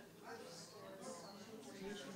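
Faint, indistinct voices talking in the room, too quiet to make out words.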